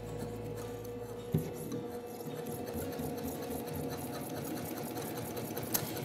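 Baby Lock Accomplish straight-stitch sewing machine stitching an invisible zipper with the invisible zipper foot, running at a steady speed with a fast, even needle rhythm. A single click comes a little over a second in.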